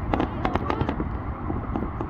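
A quick run of sharp cracks or pops, several packed into the first second, over a steady low rumble.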